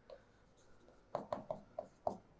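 Pen writing on the screen of an interactive whiteboard: faint, with a small tick at the start and then a quick run of about five short strokes in the second half as letters are written.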